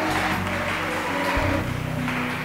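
Soft live band music: sustained chords over a bass line, the bass moving to a new note about one and a half seconds in.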